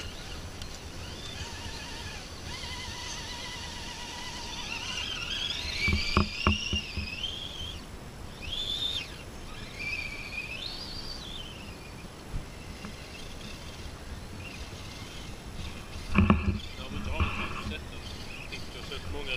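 The small electric motor of a radio-controlled rock crawler whining as it climbs over rocks, its pitch rising and falling with the throttle. There are a couple of sharp knocks about six seconds in.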